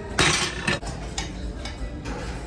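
Metal clanks and clinks of a gym weight machine: one loud clank near the start, a second shortly after, then a few faint ticks.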